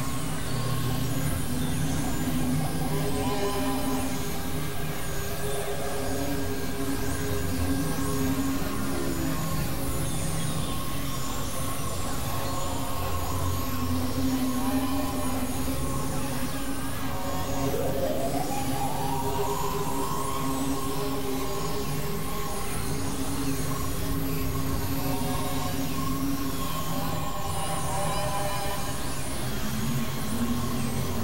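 Experimental synthesizer drone music: layered sustained tones over a rumbling, noisy bed at an even level, with one tone sliding upward a little past halfway.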